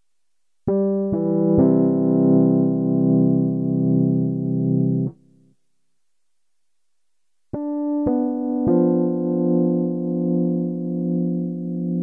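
Two chords played on a MIDI keyboard through a software instrument in Ableton Live. Each chord is rolled, its notes entering one after another, and then held for about four seconds with a gentle wavering in level. The second chord begins a couple of seconds after the first stops.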